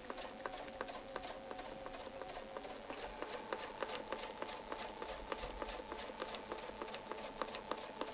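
Domestic sewing machine free-motion quilting, its needle making a fast, even run of ticks over a faint motor whine that steps up in pitch about three seconds in as the machine speeds up.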